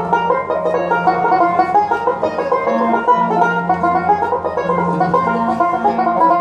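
Instrumental passage of Algerian chaabi music: a banjo picks a quick, busy melody, with violin and keyboard playing alongside and long held low notes underneath.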